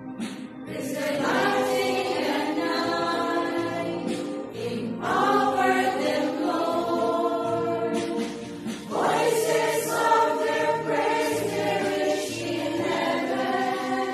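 A choir of women's voices singing a slow hymn to the Virgin Mary in long held phrases, with new phrases beginning about one, five and nine seconds in.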